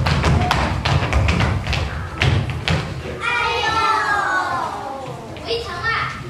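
Rapid thumping and tapping with a heavy low rumble for the first half, then a child's voice calls out in a long line falling in pitch, with a short second call near the end.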